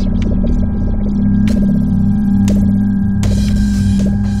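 Ambient electronic music: a steady low droning hum over a throbbing pulse, with light ticks, two sharp clicks a second apart, and a wash of hiss coming in a little after three seconds.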